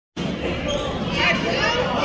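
A basketball bouncing on a gym's hardwood floor during play, with voices echoing through the hall.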